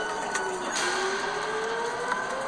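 Air-raid warning siren wailing, its pitch falling and then, a little under a second in, starting to rise again.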